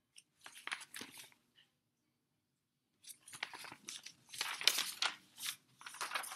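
Paper pages of a large picture book rustling and crinkling as they are handled and turned: a short rustle near the start, a pause of about two seconds, then a longer, louder run of rustling as a page is flipped over.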